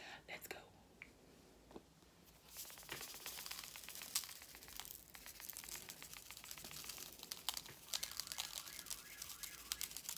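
Sea salt shaken from a canister onto cut lemon and lime wedges on a plate: a dense run of fine ticking grains that starts about two and a half seconds in and keeps going.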